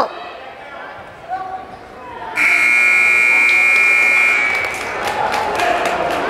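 Wrestling match timing buzzer sounding once, a loud, steady, high electronic tone lasting about two seconds, starting a couple of seconds in.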